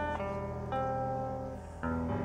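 Live campursari koplo band playing a short instrumental phrase between sung lines: a few held melody notes over a steady low bass, changing note twice, with no singing.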